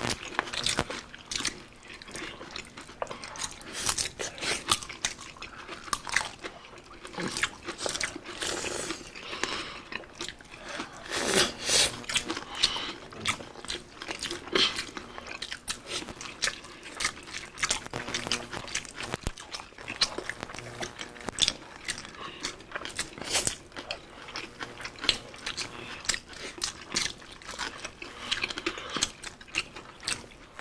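Close-up eating sounds from several people: chewing with many short, irregular crunches as crispy deep-fried pork belly (bagnet) and rice are bitten and chewed.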